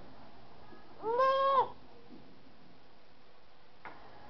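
A single drawn-out high-pitched call about a second in, lasting about half a second and holding a steady pitch, followed near the end by a faint click.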